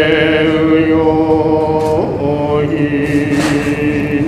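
A solo voice chanting in long held notes, its pitch shifting about halfway through.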